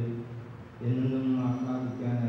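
A man's voice chanting a liturgical prayer on long, level held notes, with a short break about halfway through.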